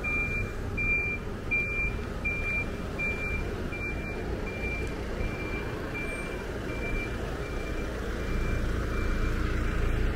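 A truck's reversing alarm beeping: one high, even beep about twice a second, growing fainter over the second half and stopping shortly before the end. Low traffic rumble runs underneath.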